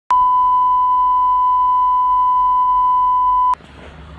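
A single steady electronic beep tone, held unchanged for about three and a half seconds, starting and cutting off abruptly.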